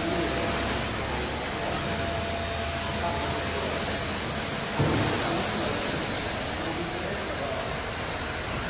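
Steady, hiss-like workshop background noise with faint distant voices, and a single thump about five seconds in.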